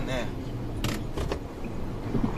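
Car cabin noise as the car turns slowly through an intersection: a steady low rumble of engine and road, with a few sharp clicks a little under a second in.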